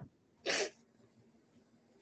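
A single short sneeze about half a second in.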